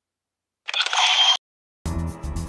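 A short hissing burst, under a second long, with a faint whistle in it, cut off abruptly about halfway in. Music starts just before the end.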